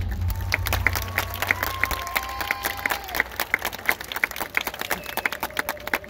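Audience applauding in the stands, with one clapper close by clapping steadily about three times a second. Near the end a single held note begins.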